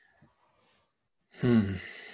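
A man's breathy, voiced "hmm", falling in pitch, about a second and a half in, trailing off as an exhale.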